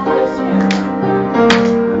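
Live band playing an instrumental break between sung verses: held chords with two sharp percussive hits, about two-thirds of a second and a second and a half in.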